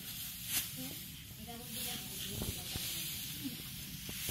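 Dry rice straw rustling and swishing as it is scooped up and gathered by the armful, with a few louder swishes.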